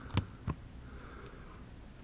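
Two short clicks about a third of a second apart as a Nest thermostat's display is pressed in to confirm a setup choice, followed by quiet room tone.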